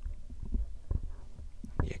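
Low rumble with scattered soft knocks and small clicks close to the microphone, starting abruptly.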